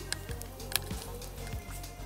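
Background music with steady held notes, over scattered small wet clicks and squelches from hands breaking apart a lump of soft, wet dig compound.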